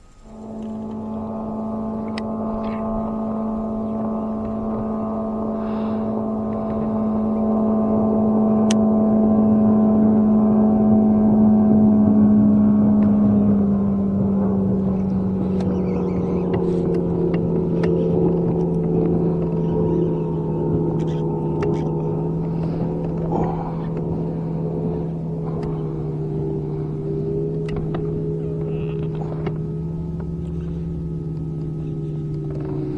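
A boat motor running with a steady hum that starts suddenly, swells louder, then drops in pitch about halfway and carries on at the lower note.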